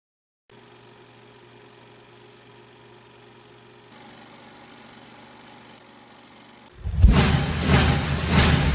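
Faint, steady hum of a film projector running. About seven seconds in, a loud, deep sound starts suddenly.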